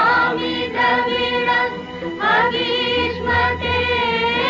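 Choir singing a devotional song in long held notes with a gentle waver, the melody stepping to a new note about two seconds in.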